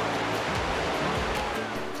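Steady rush of whitewater in a river rapid, with soft background music beneath it.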